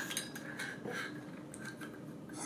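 Faint metallic clicks and light scraping as the stainless steel shaft and bearing assembly of an MLRV magnetic probe is slid back into its tube by hand.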